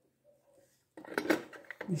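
Light plastic clicks and knocks from a miniature diorama fridge being handled, its small door clicking open. The clicks start about a second in.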